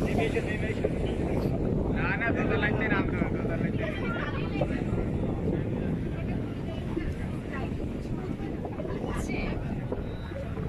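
Steady low rumble of a boat under way, engine and wind on the microphone, with people's voices talking over it at times.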